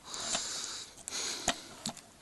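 A person sniffing in through the nose twice, with a few light clicks from a plastic DVD case being handled.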